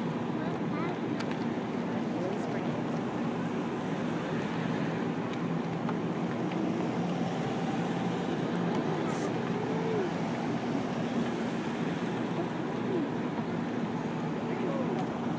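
A slow procession of police cars passing at low speed: a steady hum of engines and tyre noise on the road, with faint voices of people standing by.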